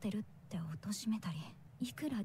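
Japanese dialogue from the anime soundtrack: continuous speech.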